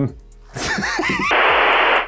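A brief voice with swooping pitch, then a loud burst of TV-static hiss, an edited-in sound effect, starting a little past halfway and cutting off suddenly.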